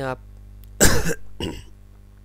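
A man coughs loudly once about a second in, followed by a shorter, quieter cough.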